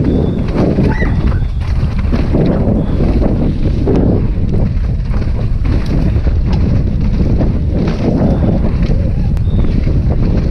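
Wind rushing over a helmet-mounted camera's microphone together with the steady rumble of a downhill mountain bike running fast over a rough dirt trail.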